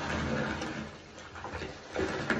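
A handful of foam-soaked sponges squeezed by hand, squelching as soapy water and foam pour into a bathtub. It is loudest in the first second, eases off, then swells again near the end with a fresh squeeze.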